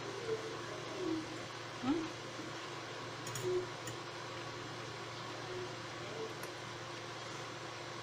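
Steady low room hum with a few faint, brief murmurs from a woman tasting food, about one, two and three and a half seconds in.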